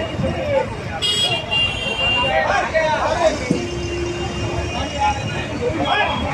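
Busy street noise: a crowd of people talking, with traffic running. Vehicle horns sound briefly: a high-pitched one about a second in, then a lower one starting about three and a half seconds in and held for about a second and a half.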